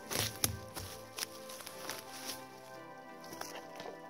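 Soft background music of sustained, held chords. Over it, in the first two seconds, a few sharp rustles and knocks of someone moving through low berry bushes and sitting down among them.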